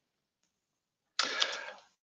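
A short rustling burst of noise with a couple of sharp clicks, lasting about half a second and starting just over a second in, set between stretches of near silence.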